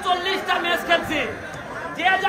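Speech only: a man talking into a handheld microphone, with people chattering around him.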